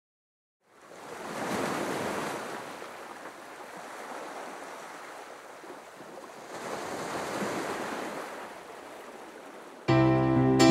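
Sea waves washing in, starting after a moment of silence: a steady noisy wash with no tone in it, swelling twice, about a second in and again around seven seconds.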